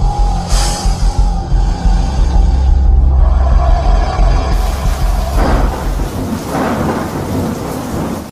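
Cinematic sound design for an animated logo intro: a loud, deep, continuous rumble like thunder under music. Two rushing swells come in about five and a half and near seven seconds in.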